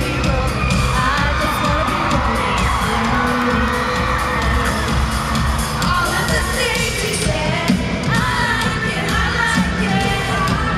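Live pop concert heard from inside an arena crowd: the band plays on while the audience cheers and shouts, with singing mixed in.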